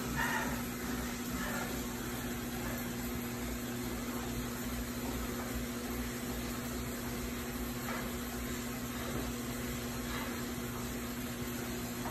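Indoor bike trainer running steadily under a pedalling rider: a constant whirring hum with a steady tone, unchanging throughout.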